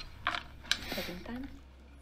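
A few faint, sharp clicks with a low, muffled voice underneath, in a lull between louder talk.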